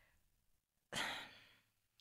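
A woman's short sigh, one breathy exhalation about a second in, otherwise near silence.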